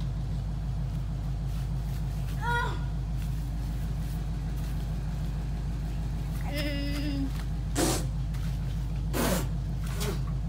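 A steady low mechanical hum, like a running motor or engine. Over it come a few brief faint voice sounds and two short hissy bursts near the end.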